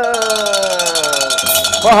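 A hand-held brass cattle bell shaken fast, clanking more than ten times a second for about a second and a half, over a man's long drawn-out shout that slides slowly down in pitch. Near the end the clanking stops and the man starts calling out words.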